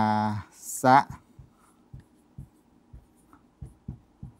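Marker pen writing on a whiteboard: a quick series of short, faint strokes and taps, about a dozen, beginning about a second in.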